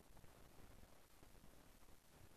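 Near silence: faint, steady background hiss with the stage microphone switched off.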